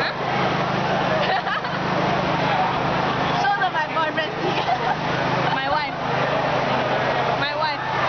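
Busy crowd chatter, with a steady low hum underneath. Nearby voices and laughter break in several times, near the middle and again near the end.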